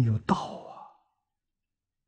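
An elderly man's long breathy sigh at the end of a spoken phrase, trailing off and fading out within the first second.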